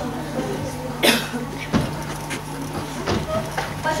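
Background noise of an auditorium full of seated children: a steady low hum with a few scattered short knocks, and a loud cough-like sound about a second in.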